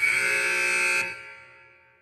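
A sustained tone with several pitches at once, starting suddenly, held steady for about a second, then fading out.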